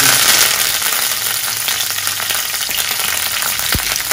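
Fresh curry leaves sizzling and spitting in hot oil with cumin seeds in a frying pan. The sizzle is loudest at the start, just after the leaves go in, and then eases a little into a steady hiss.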